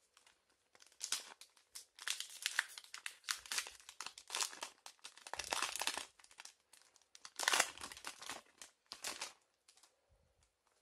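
Foil wrapper of a Pokémon Hidden Fates booster pack crinkling and tearing as it is ripped open by hand. It goes in a run of crackly bursts, loudest about seven and a half seconds in.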